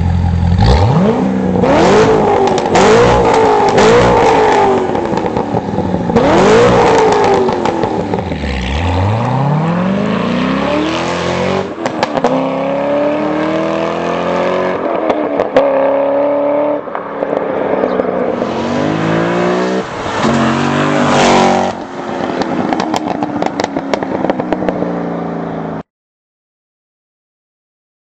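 Corvette Z06 V8 through a valve-controlled stainless steel aftermarket exhaust, revved in a series of quick blips, then accelerating hard several times with the pitch climbing and dropping back. Sharp crackles come through on lift-off.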